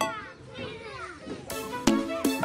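Several children giggling quietly in overlapping, falling little laughs, with no music under them. Bright children's-song music with struck notes starts again about one and a half seconds in.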